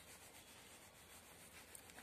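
Near silence with the faint sound of a crayon colouring on paper.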